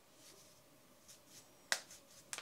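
Finger knuckles cracking as the hands press the fingers back: a few faint pops, then one sharp crack near the end.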